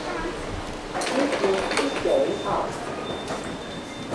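Indistinct talking inside a lift car, with a knock about a second in and a thin steady high tone in the second half.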